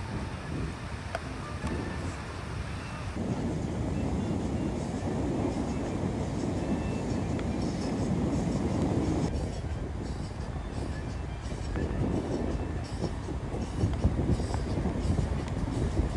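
Outdoor beach ambience: a steady low rumble of surf and wind on the microphone, growing louder about three seconds in.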